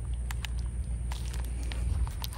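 Fingers pressing and probing pork through its plastic shrink-wrap, giving scattered faint crinkles and ticks over a steady low rumble.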